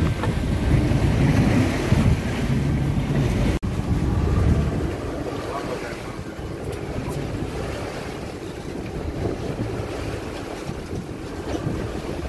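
Wind buffeting the microphone over open water washing against a boat, gustiest in the first few seconds, with a momentary drop-out a little over three seconds in.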